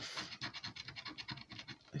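A plastic scratcher scraping the coating off a scratchcard's number panel in quick, short strokes.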